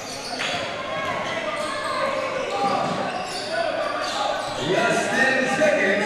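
Live basketball game in a gymnasium: spectators and players chattering and calling out in the echoing hall, with the ball being dribbled on the hardwood court.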